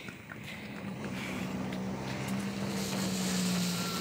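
A car approaching, its engine a steady low hum that grows gradually louder.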